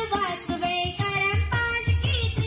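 A child's voice singing a Hindu devotional bhajan into a microphone, held notes gliding between pitches, over regular percussion beats with jingling.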